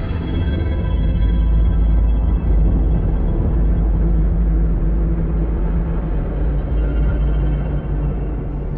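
Film soundtrack: a loud, deep, steady rumble of a rocket lifting off, under dark, sustained droning music.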